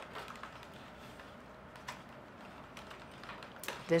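Faint rustling and a few light clicks of a flat reed weaver being threaded in and out of reed basket spokes in plain weave.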